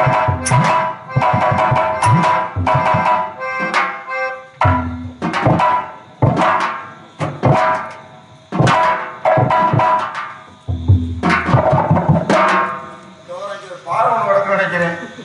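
Tabla drumming in a quick rhythmic pattern of sharp, ringing strokes, played in phrases with short breaks. A man's voice comes in near the end.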